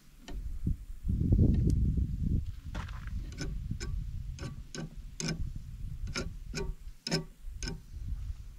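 A low rumble for the first couple of seconds, then a run of sharp ticking clicks, about two or three a second, that stops near the end.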